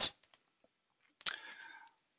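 Computer mouse clicking faintly a couple of times, then a short noisy sound of under a second starting a little past the middle.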